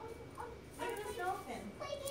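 A small child's wordless vocalizing: short, high, up-and-down squeals and babble in the second half.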